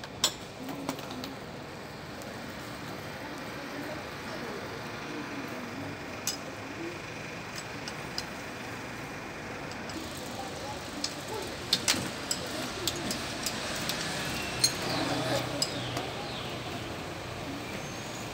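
Bicycles rolling over cobblestones, with scattered light clicks and clinks over steady outdoor background noise and faint voices.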